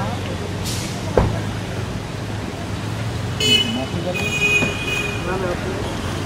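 Street traffic with a steady low engine hum and a vehicle horn honking twice in quick succession just past the middle, over faint voices. A single sharp knock sounds about a second in.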